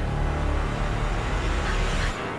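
Low, steady rumbling drone from a TV episode's dramatic soundtrack.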